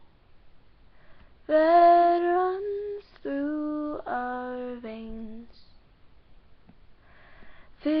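A young woman's voice singing the alto line of a choral arrangement unaccompanied: after a quiet second and a half, one longer held note rising slightly, then three shorter held notes, then quiet until the next phrase begins near the end.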